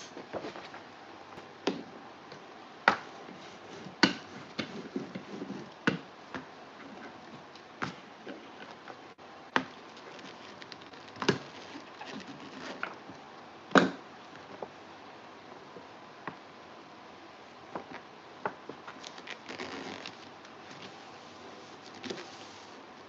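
A large paper printout being handled and pressed by hand onto foam board: soft paper rustles with scattered light taps and knocks, the sharpest about two-thirds of the way in. Near the end comes a short stretch of hands rubbing the paper flat.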